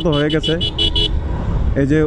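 A horn beeping rapidly, about six short high beeps in a second, over the steady low rumble of riding in traffic.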